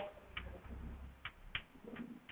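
Chalk tapping and scraping on a blackboard as a word is written: a few faint, sharp ticks at irregular intervals.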